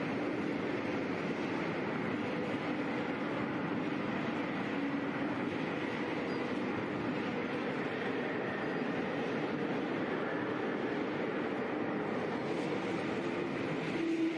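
Steady drone of factory machinery in a concrete pipe plant's shop, a continuous rumble with faint hum tones and no sudden events.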